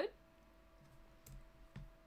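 A few faint computer mouse clicks, spaced irregularly, over a faint steady hum.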